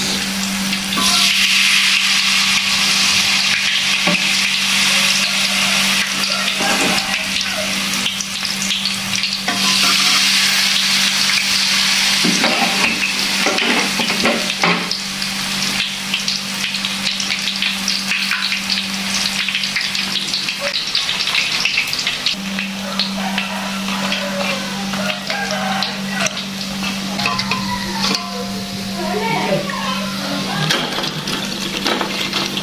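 Peanut peyek, rice-flour batter studded with peanuts and chili, sizzling as it deep-fries in hot oil in a wok, the bubbling louder around two seconds and again around ten seconds in. A few sharp knocks sound partway through.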